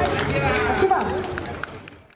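Voices of a street crowd talking, with scattered clicks and knocks, fading out near the end.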